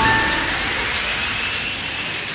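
A long chain of plastic dominoes toppling in a fast, continuous clatter that eases off slightly toward the end.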